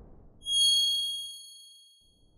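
Logo sound-effect chime: a single bright, high ding about half a second in that rings out and fades over about a second and a half. Before it, the tail of a whoosh dies away.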